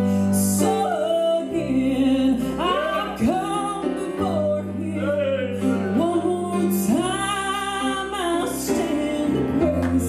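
A woman singing a southern gospel song with long, bending notes, accompanied by acoustic guitar, over sustained low accompaniment notes that change every few seconds.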